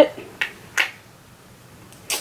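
Two short, light clicks, a little under half a second apart, at about -25 dB overall.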